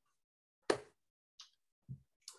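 A few short clicks close to a microphone: one sharp click, a fainter tick, then a soft low thump near the end.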